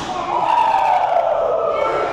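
A long drawn-out vocal call, one sustained voice sliding slowly down in pitch over about two seconds.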